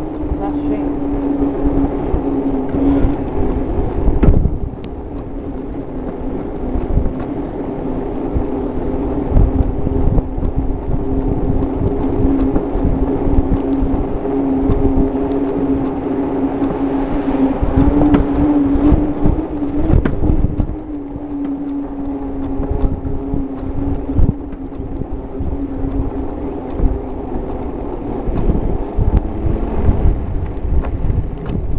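A bike rolling along a paved street, with a steady hum that eases off briefly a couple of times and low thumps and rattles from the road.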